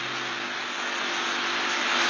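A steady rushing hiss of background noise in an old interview recording, getting gradually louder through the pause, with a faint low hum.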